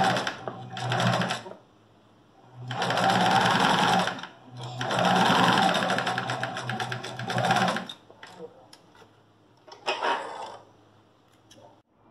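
Domestic sewing machine stitching a seam through two layers of fabric in stop-start runs: two short bursts, then two longer runs of about a second and a half and three seconds, and one more short burst near the end.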